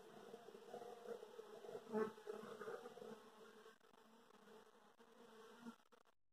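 A mass of honey bees (Apis) buzzing over their opened comb: a faint, steady, pitched hum with a brief louder swell about two seconds in. It grows softer in the second half and cuts off just before the end.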